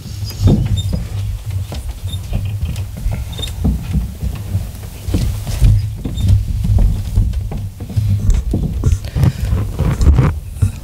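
Lectern microphone being handled: irregular low thumps and rumble with small scuffs and clicks throughout as the gooseneck mic is bumped and adjusted.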